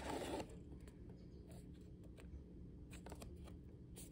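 Faint handling of a cardboard box and its paper inserts: a brief paper rustle at the start, then a few light clicks and taps over quiet room tone.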